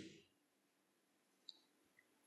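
Near silence: room tone, with one faint, short, high click about one and a half seconds in.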